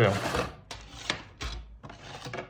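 Cardboard model-kit box being tipped open, its paper instruction booklet and plastic sprues sliding out: a few light knocks and rustles.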